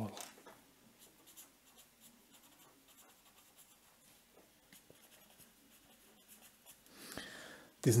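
Felt-tip pen writing a word by hand on paper: faint, scattered scratchy strokes as the letters are drawn, with a soft hiss of the hand moving across the paper near the end.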